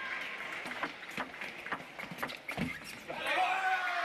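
Table tennis rally: the celluloid ball clicking off rackets and the table in a quick series of sharp ticks about half a second apart. Near the end a man's voice calls out in a long, falling shout as the point ends.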